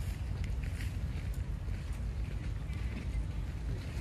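Faint, brief high squeaks from juvenile macaques wrestling, over a steady low rumble.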